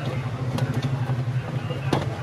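A steady low engine drone with faint voices behind it, and a few sharp clicks, the loudest just before the end.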